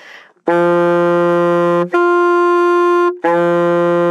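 Alto saxophone playing long, tongued tones after a quick breath: a low D, the D an octave above, then the low D again, each held about a second and a half. It is an octave exercise in which only the breath energy changes between the registers.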